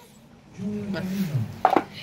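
A man's low voice for about a second, then a few sharp clacks about one and a half seconds in as a plastic dog food bowl knocks on the concrete floor.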